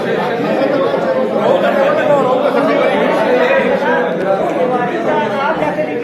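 Many men talking at once in a crowded room: a steady hubbub of overlapping conversation, with no single voice standing out.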